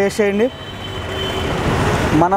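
Road traffic: a vehicle passing close by on the street, its noise swelling steadily over about a second and a half after a few words of speech.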